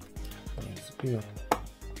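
Background music with a steady low beat, and one sharp plastic click about one and a half seconds in as a scissor blade works the plastic latch of the vacuum cleaner's bottom plate.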